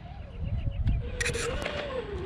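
A 1/10-scale RC rock crawler's brushed electric motor and gears whining, the pitch wavering up and down with the throttle. Low wind rumble sits under it, and a short burst of scraping comes about a second in.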